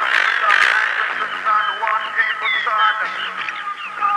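Background music made of many short, quickly changing high notes over a steady bed.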